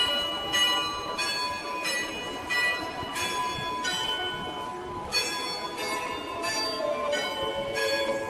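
Church bells ringing a peal, one bell struck about every two-thirds of a second, each stroke on a different note and ringing on under the next.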